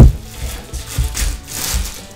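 A sharp knock on the countertop, then thin plastic wrapping crinkling and rustling as it is pulled off a block of fondant, with a few soft thumps.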